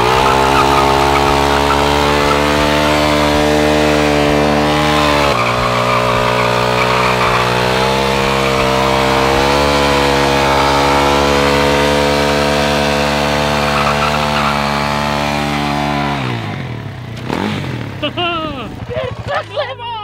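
A Suzuki DR-Z400SM supermoto's single-cylinder four-stroke engine is held at high revs for a long stationary burnout, its rear tyre spinning and smoking on the asphalt. The revs drop off about sixteen seconds in, and excited voices follow.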